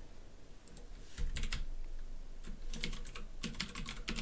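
Computer keyboard typing: irregular runs of quick key clicks that begin about a second in.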